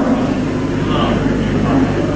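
Steady low electrical hum with background noise from the microphone and public-address system, heard in a pause between spoken phrases.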